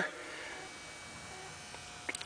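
Quiet room tone with a faint, steady hum.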